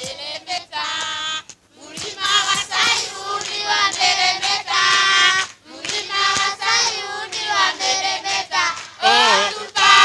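A children's choir singing together while clapping their hands, the song coming in phrases with brief breaks between them.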